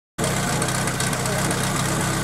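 Small combustion engine idling steadily with an even low pulse, most likely the team's portable fire pump ticking over before the start of a fire-attack run.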